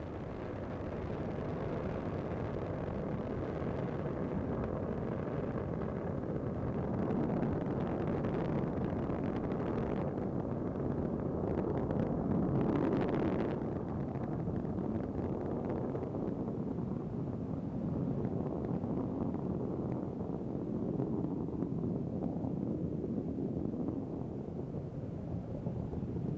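Space shuttle Endeavour's twin solid rocket boosters and three main engines burning during ascent: a steady low rocket noise that swells briefly about twelve seconds in.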